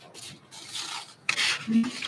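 Rustling and rubbing noises in several bursts, growing louder about halfway through, with a brief low squeak near the end.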